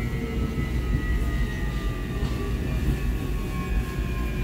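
Subway train running noise heard inside the car: a steady low rumble of wheels and running gear, with a faint whine that falls slowly in pitch as the train slows toward the station.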